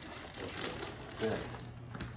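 Crinkling and rustling of protective paper laid over a new concrete floor, crushed underfoot by a person walking across it.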